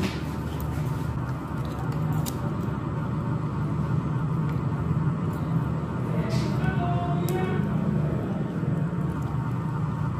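A steady low motor hum that holds level throughout, with a couple of sharp clicks about two and seven seconds in.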